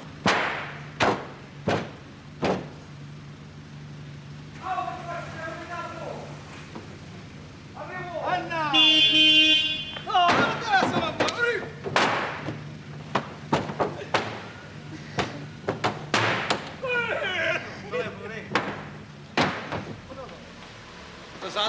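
Indistinct voices with several sharp knocks and slams, over a steady low hum. Partway through, a car horn sounds once for about a second.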